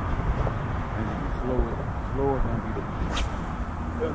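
Steady low rumble of highway traffic from an overpass, with faint voices about one and a half and two and a half seconds in and a brief sharp click just after three seconds.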